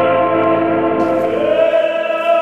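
Tenor voice holding a long sung note in a reverberant hall, sliding up to a higher held note past the halfway mark.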